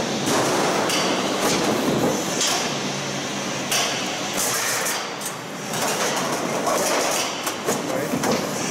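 Glazed step-tile roll forming machine running, feeding prepainted steel sheet through its rollers, with a steady clatter and repeated sharp knocks about every second or so.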